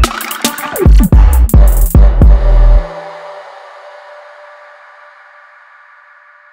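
Electronic track played back: a drum-machine beat with deep bass and short synth stabs, which are one-shots resampled from the track's lead synth. The music stops about three seconds in and leaves a reverb tail that slowly fades.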